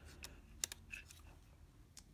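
A few faint, sharp clicks from the aperture ring of a 50 mm f/1.4 Nikkor being turned on a Nikomat FTN, the loudest a little over half a second in. The ring is being swung to its end stops to index the lens's maximum aperture to the camera's meter.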